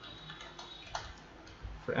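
A few faint, widely spaced keystroke clicks on a computer keyboard.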